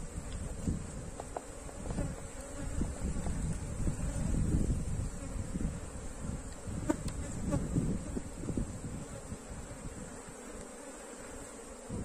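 Honeybees buzzing around an opened hive as comb frames are lifted out, with uneven low rumbling noise and a sharp click about seven seconds in.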